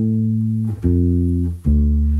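Fender Precision Bass playing a minor-triad arpeggio: single plucked notes, a new one about every second, each ringing on until the next.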